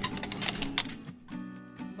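Quick light clicks and taps of metal-framed suncatchers being handled on a tabletop, followed near the end by a short, steady musical tone.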